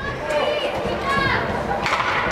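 Voices shouting and calling out during youth ice hockey play in an indoor rink, over a steady hall din. A single sharp knock comes near the end.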